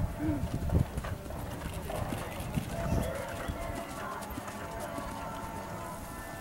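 A horse's hoofbeats on a dirt arena, faint and uneven, with quiet voices in the background.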